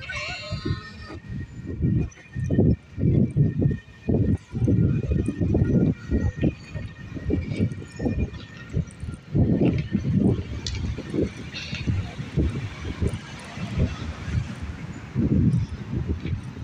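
Wind buffeting a phone's microphone on a city street, as uneven low rumbles that keep coming and going, with faint street traffic behind.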